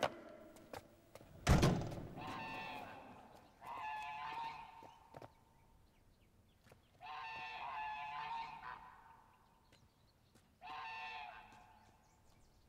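A single thump about a second and a half in, then domestic geese honking in four separate drawn-out calls of a second or so each.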